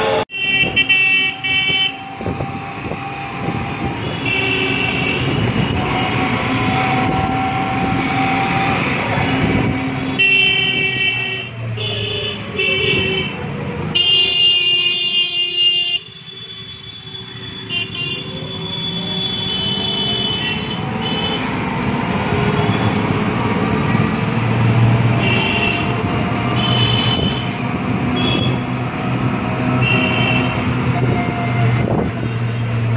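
Busy city street traffic with vehicle horns honking again and again, some short toots and a few held for two or three seconds, over a steady rumble of engines and road noise.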